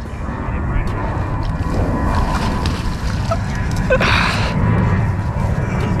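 A hooked blue catfish thrashes at the water's surface by the bank, with one short splash about four seconds in, over a steady low rumble.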